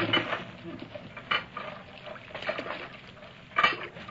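Radio-drama sound effect of a whaleboat being lowered: irregular clattering and knocks, with a louder knock about three and a half seconds in.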